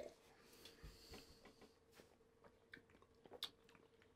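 Near silence: faint mouth sounds of beer being sipped and tasted, with a few soft scattered clicks over a faint steady hum.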